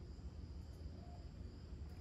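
Faint room tone: a low steady hum with a thin, steady high-pitched whine.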